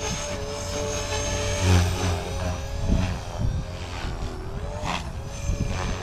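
Blade Fusion 360 electric RC helicopter flying at high head speed: a steady whine from the rotor and motor, swelling briefly about two seconds in.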